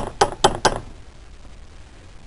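Four sharp metal knocks in quick succession, about a fifth of a second apart, within the first second, as steel parts strike at a bench vise.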